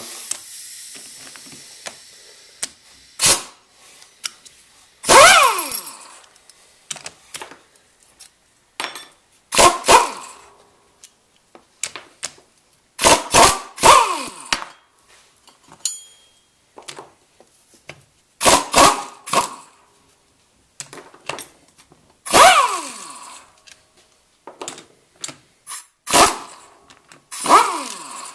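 Impact wrench running the half-inch cover bolts out of a Ford 8.8 differential housing in repeated short bursts, several of them dying away with a falling whine as the tool spins down.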